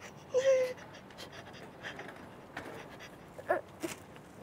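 A woman panting and whimpering in distress: a short whimpering cry about half a second in, heavy breathing through the middle, and a brief sobbing gasp near the end.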